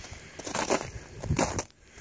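Footsteps crunching through snow, about one step every 0.7 seconds.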